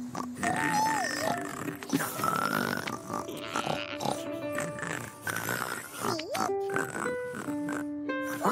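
Children's cartoon soundtrack: light music mixed with comic animal-like character noises, including a couple of sliding pitch swoops.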